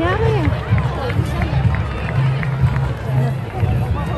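Wind buffeting the microphone, with distant voices calling out across a soccer match; a drawn-out call rises and falls right at the start.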